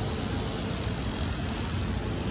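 Steady outdoor background noise with a low rumble, without distinct events.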